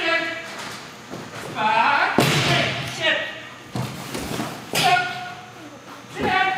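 Agility teeter (seesaw) plank banging down onto the floor about two seconds in as the dog rides it down, with reverberation in a large hall. Short high-pitched voice calls come before and after it.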